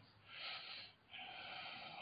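A man breathing audibly close to the microphone: two soft breaths, the second longer, about a second apart.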